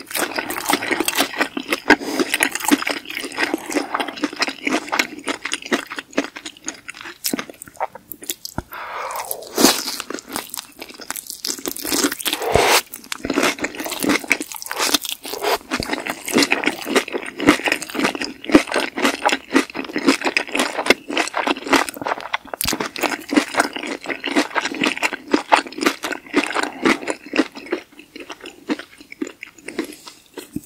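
Close-miked chewing of a crunchy fried chicken drumstick in spicy sauce: dense, rapid crunching with mouth sounds, pausing briefly about a third of the way in.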